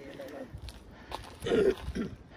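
A person's low, brief voice sound, loudest about one and a half seconds in, with a couple of light clicks.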